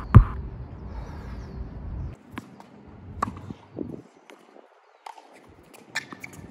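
Heartbeat sound effect: a last loud beat just at the start, over a low hum that cuts off about two seconds in. After that only a few faint scattered knocks.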